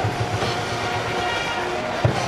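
University cheering-section brass band playing a held, horn-like chord over a steady drumbeat that fades after the first second.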